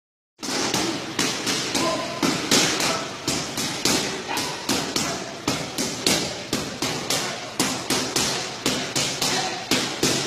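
Boxing punches landing one after another in a quick, even rhythm of about three a second, each a sharp thud.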